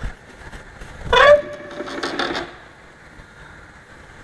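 A heavy steel pellet mill chamber door being opened. A short squeal comes about a second in, followed by a second or so of metallic scraping and rattling as the door swings, then it goes quieter.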